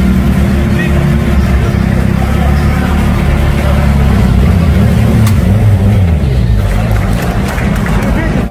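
Hot Wheels stunt car's engine running loudly, its pitch drifting up and down as it is revved, with voices over it.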